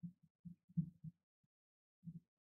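A man's voice murmuring faintly in short, low, irregular fragments, with no clear words.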